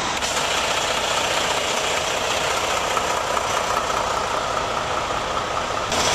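A vehicle engine idling steadily, with a faint steady whine over it.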